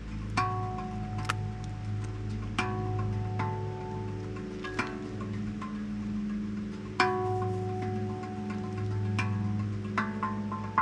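Handpan played slowly with the fingertips: single notes struck a second or two apart, each ringing on over the others, with the loudest strike about seven seconds in.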